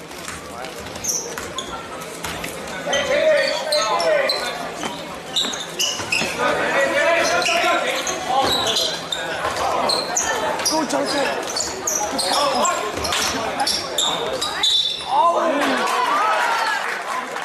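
Basketball being dribbled on a hardwood gym floor, with many short, high sneaker squeaks from players moving on the court, and players and spectators calling out, all echoing in the gym.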